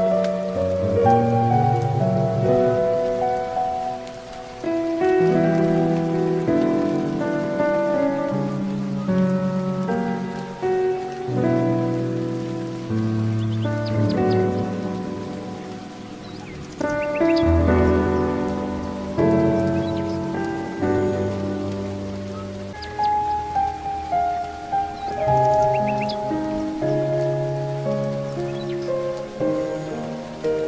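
Slow, gentle solo piano music, its notes ringing and overlapping, over a steady rain-like hiss of nature ambience, with a few faint high bird chirps.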